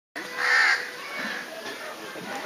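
A single loud, harsh bird call about half a second in, followed by quieter outdoor background sound.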